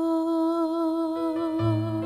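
A woman singing a long held note into a microphone, with a vibrato that sets in about half a second in. A low accompaniment note comes in underneath near the end.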